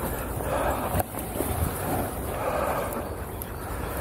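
Steady wind rumble on the microphone with a soft outdoor hiss and a few faint ticks.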